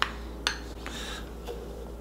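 A few light clicks of a metal spoon against kitchenware as mascarpone is scraped off it into a plastic jug, the sharpest right at the start and another about half a second in.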